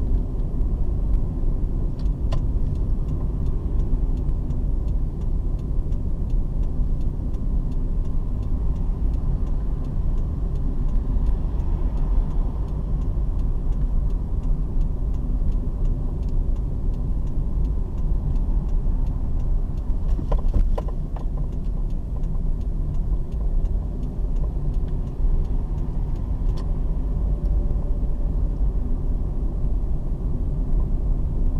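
Steady low rumble of a moving car's engine and tyres heard from inside the cabin. A few faint ticks come about two seconds in, around twenty seconds, and again near the end.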